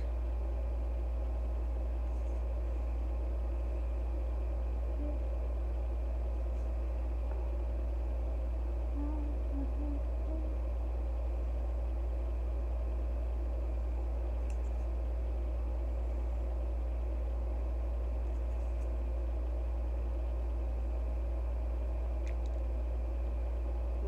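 A steady low hum, unchanging in pitch and level, like an idling engine or a machine running.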